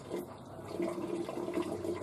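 Steady rushing hiss from the lit gas burner under a hangi steamer barrel, heating the water to make steam, with a faint low hum in the second half.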